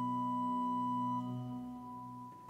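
Church organ holding a sustained chord, its notes stopping one after another: the upper note cuts off about a second in and the rest fade near the end. This is the chord that gives the choir its starting pitch before they sing.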